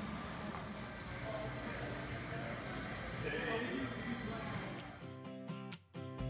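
Restaurant room ambience with indistinct voices in the background. About five seconds in, a background music track starts.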